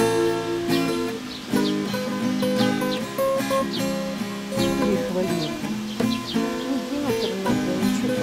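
Acoustic guitar being played slowly, picked notes and chords ringing one after another.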